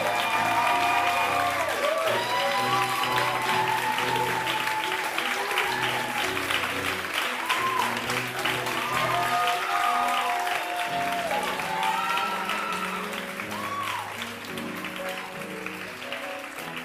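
Audience applauding over live bow music from the band, with a few voices calling out; the whole gradually fades down toward the end.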